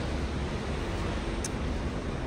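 Steady low rumble and hiss of a covered parking garage's background noise, with one faint short click about one and a half seconds in.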